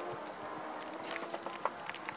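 Porsche 911 GT3 rally car's engine running faintly at a distance as it approaches on a gravel special stage, with scattered sharp clicks through the second half.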